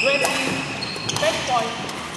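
Badminton shoes squeaking on the indoor court floor: a sharp high squeak right at the start and shorter, lower gliding squeaks about a second and a half in, with a few light knocks, over the chatter of the hall.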